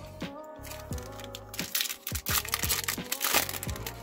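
A foil trading-card pack wrapper crinkling and tearing open, loudest from about a second and a half in, over background music.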